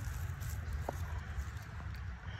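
Faint rustling of forest litter as a black milk cap mushroom is cut from the ground with a small knife and lifted, with one brief tick about a second in, over a steady low rumble.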